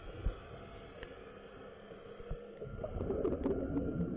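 A diver breathing through a Scubapro regulator's second stage underwater, heard close up. About three seconds in, exhaled bubbles burst out and rise with a low bubbling gurgle.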